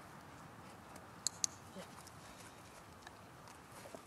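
A hand-held dog-training clicker clicking twice in quick succession, about a second in, marking the dog's correct response in clicker training.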